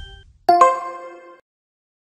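Chime sound effect for a logo sting: two quick struck chime notes about half a second in, ringing bell-like and fading out within about a second.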